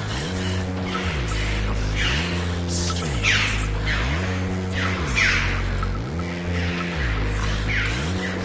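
Electronic background music: a stacked synth bass line that rises and falls in a pattern repeating about every second, with swooshing noise sweeps on each cycle.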